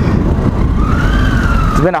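2012 Triumph Daytona 675's inline three-cylinder engine running under way, with a low rumble of wind on the microphone. A thin whine rises in pitch about a second in and then eases back down.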